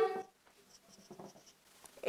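Marker pen writing on a whiteboard, faint squeaks and strokes.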